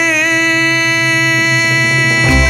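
A male singer holding the song's closing note on the word "feliz" at one steady pitch, over a low sustained accompaniment.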